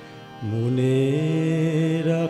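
Harmonium and Roland synthesizer keyboard playing a held, steady chord that comes in louder about half a second in, an instrumental passage with no singing.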